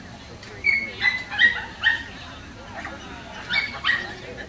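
A dog yapping in short, high-pitched yips: a run of four about a second in, then two more near the end.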